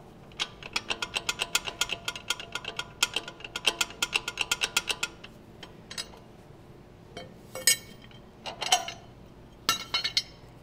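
Hand ratchet wrench clicking in a quick even run, about five clicks a second, as the new bolts of an 80 Series Land Cruiser caster correction plate are run down. This is followed by a few separate metal knocks and clanks.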